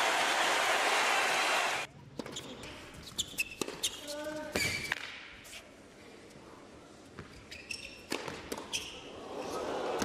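Arena crowd cheering and applauding, cut off abruptly about two seconds in. Then a quiet indoor tennis court: a ball bouncing a few times, a brief shout, and the knock of a serve, followed near the end by the racket strikes and ball bounces of a rally.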